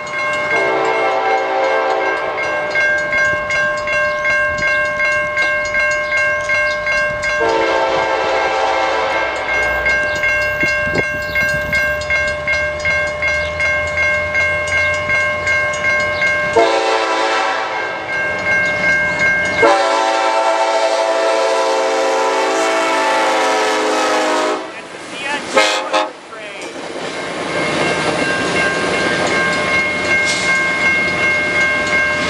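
Railroad grade-crossing bell ringing steadily, about two strokes a second, while a CN freight locomotive's horn sounds four blasts for the crossing, the last the longest. In the last few seconds the horn stops and the rumble and rattle of the train reaching the crossing takes over.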